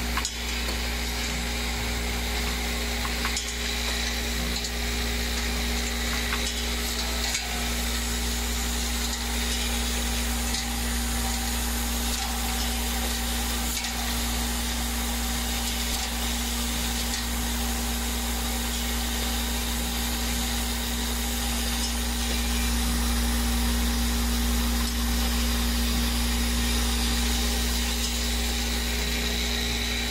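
Pouch packing machine with a vibratory bowl spoon feeder running: a steady hum and hiss with faint clicks now and then, a little louder in the last third.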